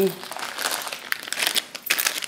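Clear plastic packets of paper flower embellishments crinkling as they are handled, a run of irregular crackles.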